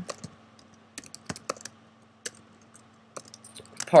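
Typing on a computer keyboard: scattered single key taps, then a quicker run of taps near the end.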